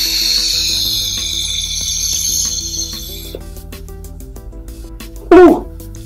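A long draw on a box-mod vape: the hiss of air pulled through the firing atomizer, lasting about three seconds before it stops. Near the end comes a short, loud burst of voice. Background music plays throughout.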